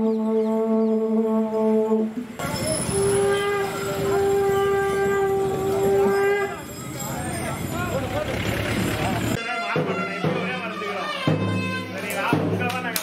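Temple processional music (mangala vadyam): long, steady held notes from a reed wind instrument over the noise of a street crowd. The sound changes abruptly twice, with a different held note after each break.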